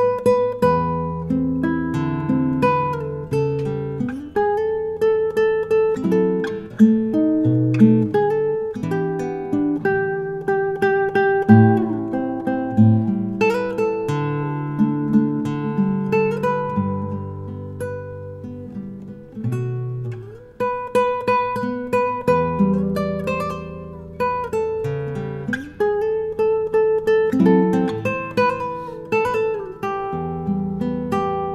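Jose Antonio 6C-CE cutaway nylon-string classical guitar played fingerstyle and heard acoustically, unplugged, as a tone test: a continuous piece of plucked melody notes over bass notes and chords.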